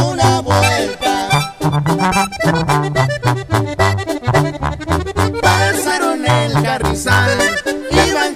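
Accordion-led norteño music in an instrumental passage: an accordion melody over a bass line stepping between low notes, with a steady beat and no singing.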